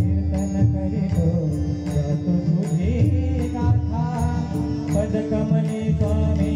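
Bhajan music: a harmonium plays a melody over a held note, with pakhawaj and tabla keeping a steady beat of about two strokes a second.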